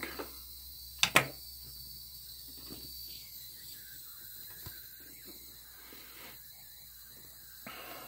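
Ultrasonic speaker driven by a 555-timer oscillator at about 20 kHz through an LM386 amplifier, heard as a faint steady high-pitched whine over a low hum. A brief sharp sound stands out about a second in.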